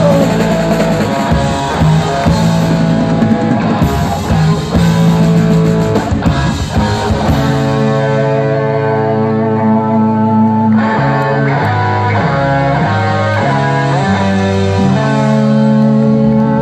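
Live rock band with electric guitars, bass and drums playing loud. About halfway through the drums stop, and the guitars and bass ring on in long held notes that change pitch every second or so.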